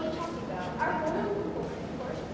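Children's voices speaking indistinctly in a large, echoing hall.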